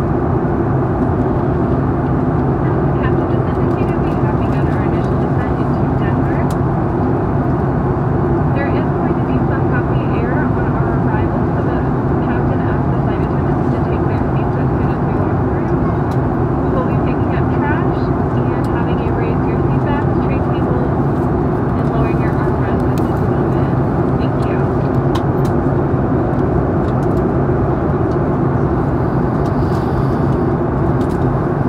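Steady airliner cabin noise in flight: the drone of the wing-mounted turbofan engines and rush of airflow, heard from a window seat. Faint voices of other passengers come and go beneath it.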